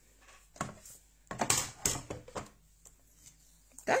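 A few irregular clicks, knocks and paper rustles: cutting plates and cardstock being handled and repositioned on the platform of a Big Shot die-cutting machine.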